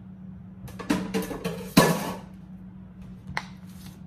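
A quick run of sharp knocks and clatters, loudest just under two seconds in, then one more click, over a steady low hum.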